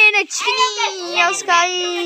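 A high-pitched voice singing in drawn-out notes, ending in one long steady held note in the second half.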